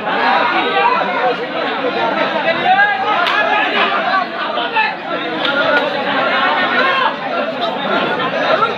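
A crowd of spectators talking and calling out at once: many overlapping voices, loud and steady, with no single voice standing out.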